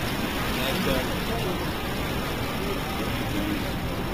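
Steady city street noise: road traffic running as a constant low rumble, with faint voices of people around.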